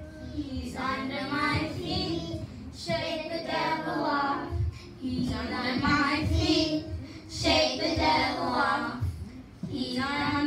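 A children's choir of young girls singing a gospel song into handheld microphones, amplified through the church's sound system. They sing in short phrases with brief breaks between them, over low thumps.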